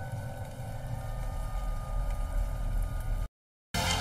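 Steady rain ambience, an even wash of noise with a low rumble, which cuts off abruptly to silence shortly before the end.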